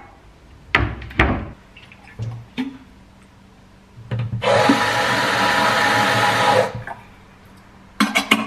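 A few knocks as a kettle is handled at a steel sink, then tap water running hard into the kettle for about two and a half seconds before it is shut off.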